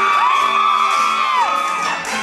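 Several audience members whooping a long 'woo' that rises, holds for about a second and falls, over a live band.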